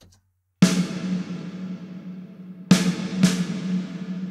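Snare drum hits played through the Valhalla VintageVerb reverb plugin, fully wet, in Concert Hall mode with a 4-second decay and the 'Now' colour: full bandwidth, bright, with clean modulation. There is one hit about half a second in and two close together near the end, each leaving a long reverb tail that rings out.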